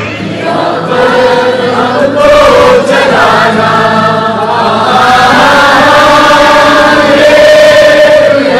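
A large crowd singing together, many voices holding long notes in unison.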